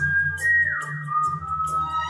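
A man whistling a melody through pursed lips over a karaoke backing track. He holds a note, steps up to a higher one about half a second in, then slides down to a lower note and holds it, while bass and percussion of the track run underneath.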